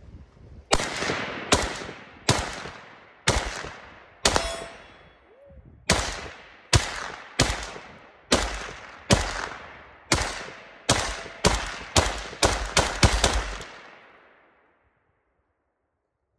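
An AK-47 rifle firing 7.62×39mm rounds as single shots to empty the magazine: about twenty sharp reports, each trailing off in a long echo. They come roughly a second apart at first, with one longer pause, then quicken toward the end before stopping about thirteen seconds in.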